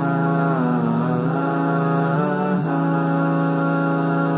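Intro music: a chant-like vocal line gliding up and down in pitch over a steady low drone.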